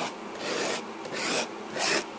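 A metal palette knife scraping through thick oil paint on a painting surface, in three short strokes about half a second apart, the last one the loudest.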